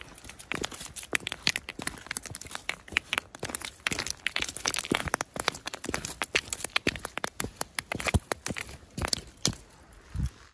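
Crunching and clattering of loose stones and gravel as a Garmin Instinct watch with its plastic case is knocked and scraped across rocky ground to try to scratch it. The sound is a dense run of irregular sharp clicks and crunches, the loudest near the end.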